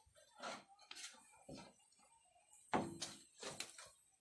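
Faint, intermittent scraping and knocks of a hand scraper against a wide, shallow metal frying pan as garri is turned while it fries, with a louder scrape about three seconds in.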